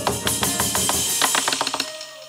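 Hát văn (chầu văn) ritual music: a quick run of drum and percussion strikes over sustained instrumental tones, thinning out near the end.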